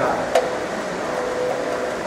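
Fiber laser marking machine with a rotary attachment running: a steady mechanical hum with a thin steady whine through most of it, and one short click about a third of a second in.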